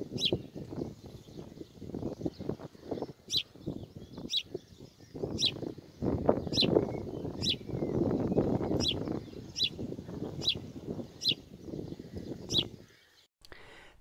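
A bird repeating a short, high chirp about once a second, over a low rumbling noise that dies away just before the end.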